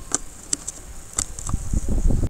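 A few short, sharp clicks over a steady low hiss, with low thuds that build toward the end.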